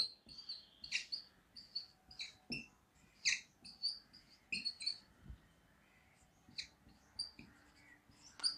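Dry-erase marker squeaking on a whiteboard as words are written: a string of short, high squeaks, one per stroke, with brief pauses between letters.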